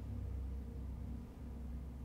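Room tone: a steady low hum with no other sound.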